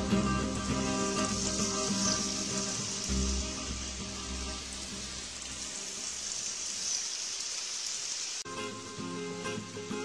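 Waves breaking against a seawall: a steady hiss of churning surf. Background music plays under it, fades away for a few seconds past the middle, and cuts back in suddenly near the end.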